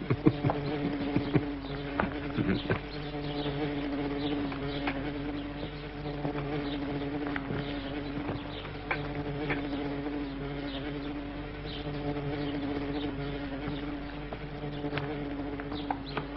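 Steady buzzing of flies over the food, with scattered light clicks.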